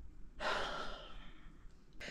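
A woman sighing: one breathy exhalation, lasting under a second, that starts about half a second in.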